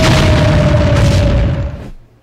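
A sudden loud movie explosion boom. Its low rumble holds for about a second and a half, with a long held tone running through it, then dies away.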